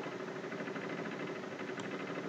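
Steady low background hum and hiss picked up by the narrator's microphone, with a single faint click, as of a computer mouse, near the end.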